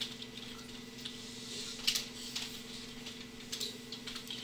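Quiet room tone with a steady low electrical hum and a few faint clicks and taps, the sharpest about two seconds in.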